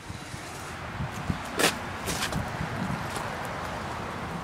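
Steady outdoor background noise on a car lot, picked up by a handheld phone's microphone while it is carried around a parked SUV, with two brief sharp clicks about one and a half and two seconds in.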